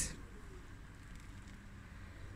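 Low, steady rumble from a pot of black-eyed beans boiling on a gas burner.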